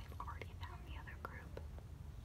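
A girl whispering gibberish, quietly, with a few faint clicks among the whispers.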